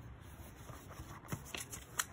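Pages of a picture book being turned by hand: soft paper rustling with a few short flicks and clicks, the sharpest near the end.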